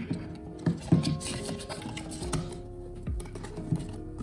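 Background music, with a few light taps and rustles of a cardboard box being closed by hand.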